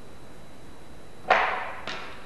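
A sharp plastic snap a little past halfway, ringing out briefly, then a fainter click near the end: a LEGO boat's pull-back missile launcher being worked by hand.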